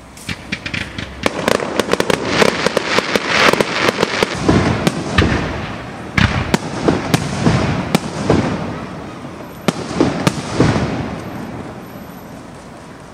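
Aerial fireworks display: shells bursting in quick succession, a dense run of sharp bangs and crackles that thins out near the end.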